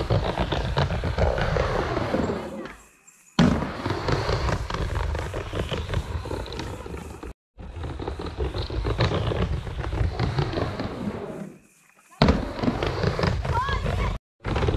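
A loud, steady outdoor rumble with indistinct voices shouting, broken into several short clips with brief silent gaps between them.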